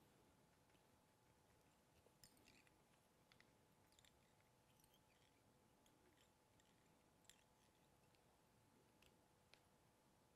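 Near silence: faint room tone with a thin steady hum and a few scattered faint clicks.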